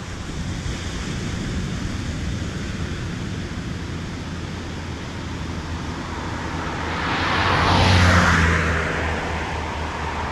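A car driving past close by on a road: its tyre and engine noise swells to a peak about eight seconds in, then falls away. A steady low hum of traffic runs underneath.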